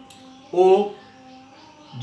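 Speech only: a man's voice holding one drawn-out syllable about half a second in, with faint room sound around it.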